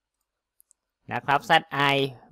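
Two faint computer mouse clicks in quick succession a little over half a second in, in an otherwise near-silent pause, followed by a man speaking.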